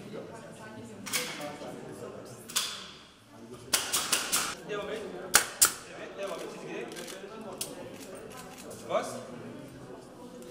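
Pneumatic nail gun firing fasteners into an OSB kennel roof. A quick run of sharp shots comes about four seconds in, then two louder single shots about a second later, over murmuring voices.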